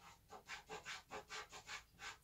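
Soft pastel stick being stroked back and forth on pastel paper: faint, rhythmic scratching, about four to five short strokes a second.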